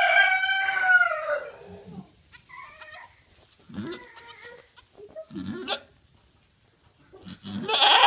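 A doe goat in labour lets out one long, loud bleat as she pushes out a kid still in its birth sac. It is followed by a few shorter, quieter calls, and a loud noisy burst near the end.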